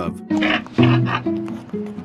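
Music: a series of short, steady held notes.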